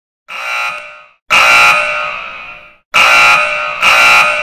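Intro sound effect: a high, alarm-like electronic ringing in four abrupt bursts, each starting suddenly and fading away over about a second.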